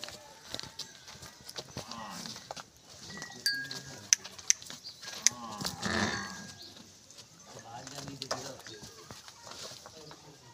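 Nili-Ravi water buffalo being led on foot over dry dirt: scattered hoof steps and a few low calls from the animal, the loudest about six seconds in.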